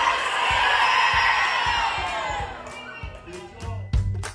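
A large group of children shouting together and cheering in a big hall, the cheer fading out after about two and a half seconds. A music sting with a low beat and chiming notes starts near the end.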